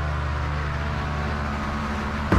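Fan boat's petrol engine and large caged propeller fan running at a steady speed while underway, a steady low drone.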